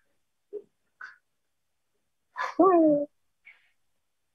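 A woman's voice saying one short drawn-out word, with a rise and fall in pitch, about two and a half seconds in, amid otherwise near-quiet pauses with a few faint small sounds.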